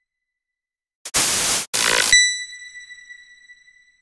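Sound effects for an animated subscribe button: about a second in, two short noisy whooshes, then a bell-like ding that rings and fades away over about two seconds.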